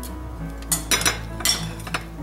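Dressed romaine lettuce being tipped from a glass mixing bowl onto a plate, with about four light clinks of glass and utensils against the dishes, over background music.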